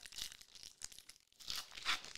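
Hands tearing open a shiny foil Panini Legacy trading-card pack: crinkling and crackling of the wrapper, with the loudest ripping near the end.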